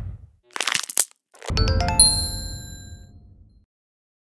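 TV news channel's logo sting: a rush that fades out, a short swishing burst ending in a sharp crack about a second in, then a deep hit with a bright chime that rings and dies away over about two seconds.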